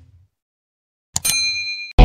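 A click, then a bright bell-like ding that rings for most of a second: the notification-bell chime of a subscribe-button animation.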